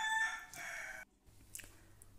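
A rooster crowing: one call, held on a steady pitch at first and then rougher, cut off suddenly about a second in.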